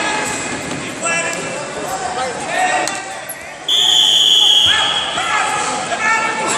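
A single whistle blast, one steady high note about a second long, starting nearly four seconds in, over voices in the background.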